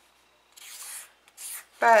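Felt-tip Sharpie marker scratching across paper as it traces around a plastic circle template: a half-second stroke about halfway in, then a shorter one.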